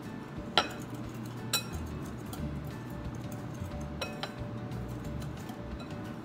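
A wire whisk stirring flour in a glass mixing bowl, its wires clinking sharply against the glass a few times.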